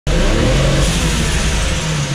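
Nissan Skyline R32 GT-R's RB26 straight-six, converted to a single turbo and running on alcohol, running loudly with its bonnet open. The level dips briefly near the end.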